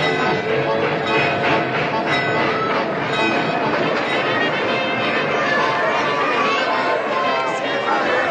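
Background music over a crowd of voices cheering and calling out, with a train running beneath as it pulls in.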